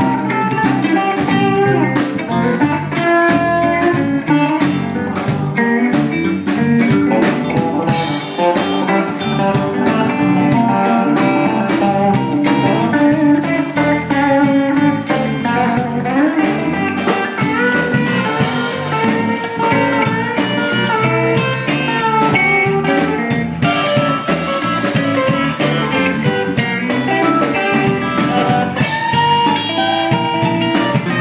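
Live blues-style band music: electric guitars played over a drum kit with a steady beat.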